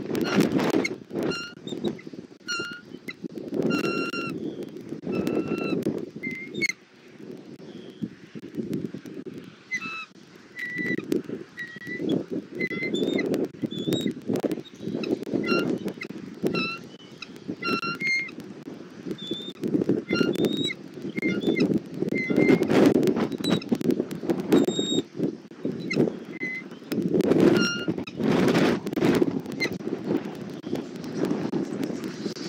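Wind gusting over an outdoor nest-cam microphone, with many short, high bird chirps and peeps scattered throughout.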